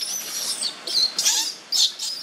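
Infant macaque giving a string of short, high-pitched squeaks and squeals, the loudest about a second in and near the end.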